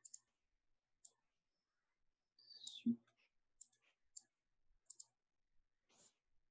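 Faint, scattered computer mouse clicks, about seven over six seconds, with one brief low murmur of a voice about three seconds in.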